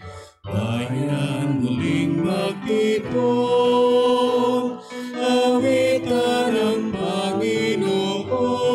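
A devotional hymn being sung in slow phrases of long held notes, with brief breaks between the phrases.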